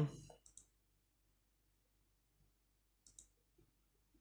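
Computer mouse clicks: two quick clicks about half a second in and another just after three seconds, with near silence between.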